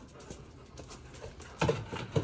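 Light, scattered ticking and tapping of dogs' claws on a concrete kennel floor as two Deutsch Drahthaar (German wirehaired pointers) move about. A man's voice comes in near the end.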